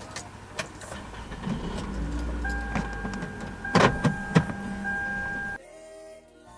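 A car being started and run, its engine a low rumble that grows stronger about two seconds in. A steady electronic tone sounds through the second half, with a few loud sharp clicks near four seconds, and the sound cuts off suddenly near the end.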